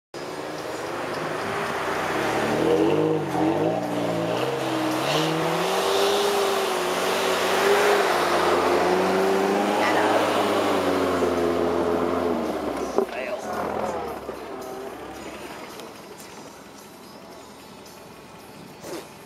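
Toyota four-wheel-drive truck engine revving up and down while it drives through deep snow, with a sharp knock about thirteen seconds in; the engine sound then fades away.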